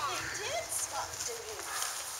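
Distant voices of people talking, in short broken snatches, with a faint click or two.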